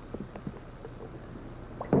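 Hushed bowling-centre room tone with a few faint short knocks during a bowler's approach, and a sharper knock right at the end.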